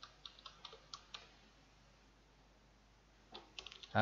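Computer keyboard typing: a quick run of faint keystrokes in the first second, a pause, then a few more keystrokes near the end.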